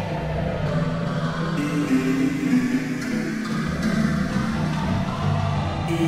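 Electronic music: a software synth (Synthmaster) played live from a Novation Impulse MIDI keyboard, sustaining chords over a low bass line.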